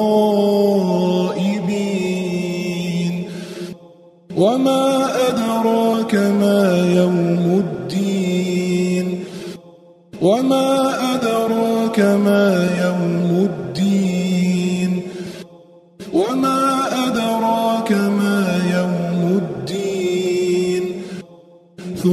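Quran recitation: one voice chanting a verse in long, drawn-out melodic phrases, repeated about four times with short pauses between.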